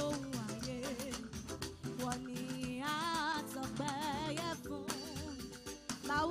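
Church choir singing with a live band, the voices wavering with vibrato over steady drums and percussion. It is an offertory song, played while the collection is taken.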